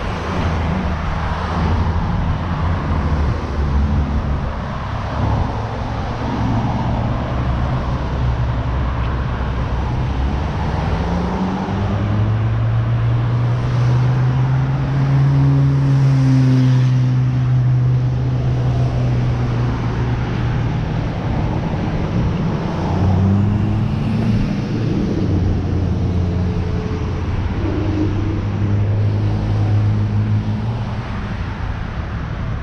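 Road traffic on a multi-lane street: a steady hum of car engines and tyre noise, with passing vehicles whose engine tone swells and bends in pitch as they go by, one louder pass near the middle lasting several seconds and another near the end.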